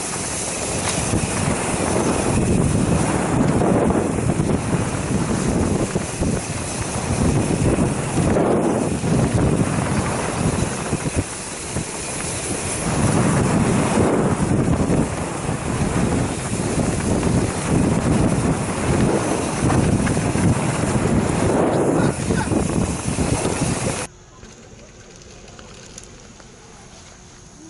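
Wind buffeting the microphone of a bike-mounted camera and the riding noise of a mountain bike descending a dirt downhill trail, a loud rush that surges and eases with speed. It cuts off suddenly near the end to a much quieter background.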